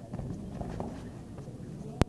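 A judoka's body landing on the tatami mats after a throw, followed by bare feet thudding and scuffing on the mats, with voices in the background. A single sharp click at the very end.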